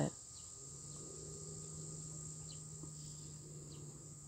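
Insects trilling in a steady, high, even buzz, with a faint low steady hum underneath.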